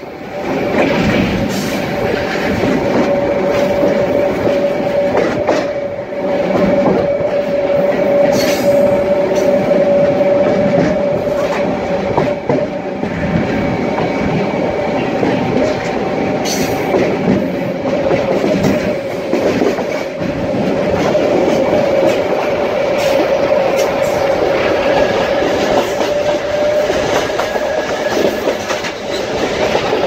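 SuperVia Série 500 electric multiple unit running at speed, heard from the car's side window: continuous rail rumble with a steady whine and a few sharp clacks from the wheels.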